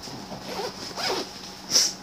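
Backpack zipper being pulled open on a pocket in a few short strokes, the last one near the end the loudest.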